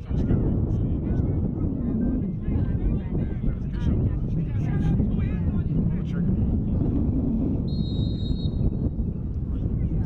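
Wind buffeting the camera microphone with a steady low rumble, over faint distant shouts and voices from the lacrosse field. A brief high steady tone sounds about eight seconds in.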